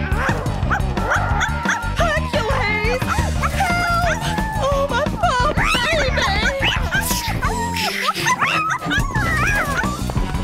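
Cartoon background music with a small cartoon dog yelping and whining in distress, set upon by the household cat.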